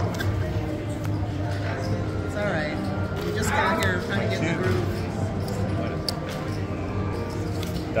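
Background music with indistinct voices at a casino blackjack table, and a few light clicks as cards are dealt.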